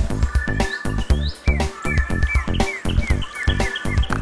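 Background electronic music with a steady, pounding beat. From about the middle, a run of short, evenly repeated chirping sounds plays over it.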